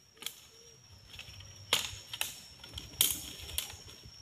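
Dry fallen leaf litter crunching and crackling as it is stepped on and stirred, in a handful of sharp crackles, the loudest about two seconds in and again at three seconds.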